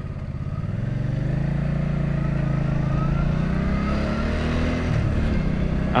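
Motorcycle engine pulling away from a standstill and accelerating, its pitch and loudness rising over several seconds, then dropping about five seconds in. Wind rushes on the helmet microphone, which has its visor open and no furry windscreen.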